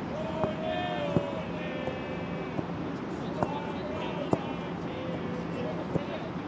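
Live sound from an outdoor football pitch: several sharp ball kicks spread through, over shouts from players and from supporters backing Lokomotiv.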